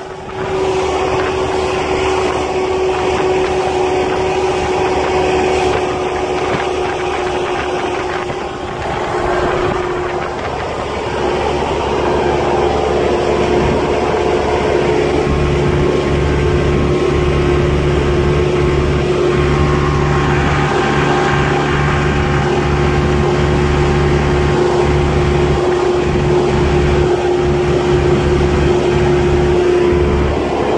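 Small motorboat's engine running steadily under way, a constant hum over the rush of wind and water. A deeper rumble joins about halfway through and carries on.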